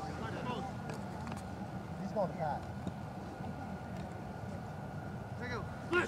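Men's voices shouting and calling out on an outdoor sports field, with short calls about two seconds in and a louder shout near the end, over a steady low rumble.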